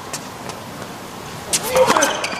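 Low, steady arena background, then near the end a tennis racket strikes the ball, with a short burst of voice at the same moment.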